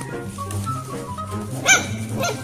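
A tabby cat lets out one short, loud call near the end, over steady background music.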